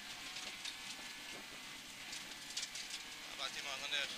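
Rally car driving on a gravel stage, heard from inside the cabin as a quiet, steady wash of engine, tyre and gravel noise.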